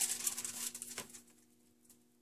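Wax paper rustling and crinkling as it is handled and folded, with a light tap about a second in. The rustling dies away about a second and a half in, leaving a faint steady hum.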